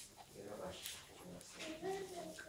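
A small child whimpering faintly, a wavering, gliding whine toward the end, over low murmured voices in the room.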